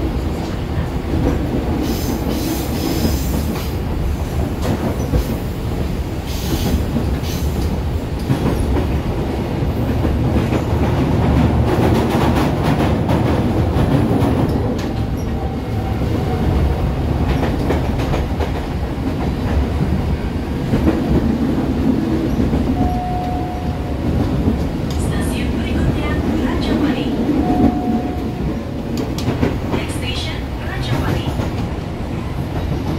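Cabin noise of a moving KRL Commuterline electric commuter train: a steady rumble of wheels on rail, with a few short high tones from the middle to the end.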